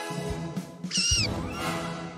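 Cartoon background music with a high-pitched squeak about a second in, wavering in pitch like a small creature's cry, and a fainter one just after.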